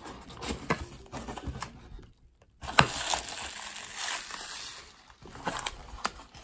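Bubble wrap and plastic packaging being handled and unwrapped from a small cardboard box: scattered crinkles and clicks, a short pause, then a sharp crackle about three seconds in and a couple of seconds of dense rustling.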